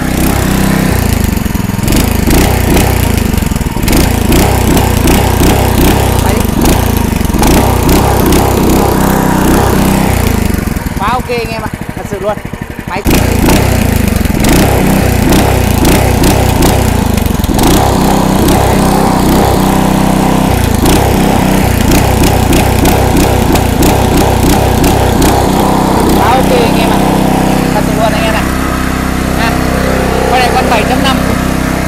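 Takata 7.5 hp four-stroke gasoline engine with a geared, diagonal output shaft, running loudly and steadily. The sound drops back for a couple of seconds about ten seconds in, then comes back up suddenly.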